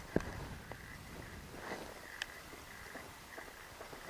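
Quiet handling noise while a fish is played on a bent spinning rod: a sharp click just after the start, another tick a little past two seconds in, and a few fainter scattered ticks over a low hiss.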